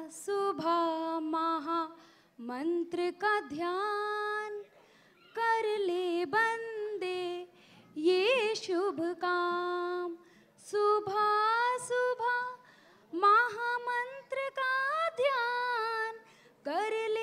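A woman singing solo into a microphone with no instrumental accompaniment. She sings in phrases of a couple of seconds separated by short breaths, and some notes are held with a wavering pitch.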